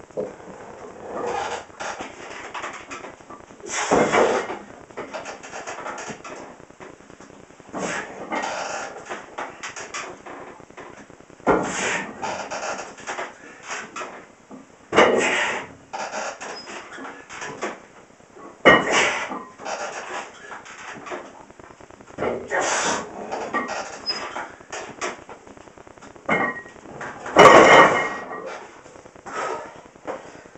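A man's forceful exhales and grunts, one every three to four seconds, as he does reps of barbell squats with 230 lb. The loudest comes near the end.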